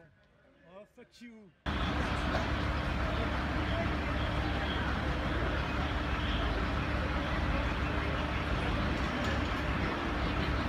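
Very quiet at first with a few faint voices, then from about two seconds in a steady street noise: a constant low rumble and a steady hum from idling emergency vehicles, with indistinct voices in the background.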